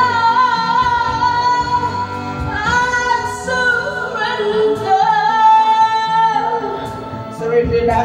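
Karaoke singing: a woman's voice through a microphone, holding long, wavering notes over a backing track.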